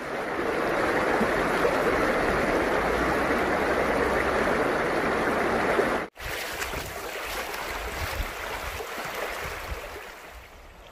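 A mountain stream rushing over rocks in a shallow rapid, as a steady noise. About six seconds in it breaks off abruptly and gives way to the quieter sound of shallow water flowing.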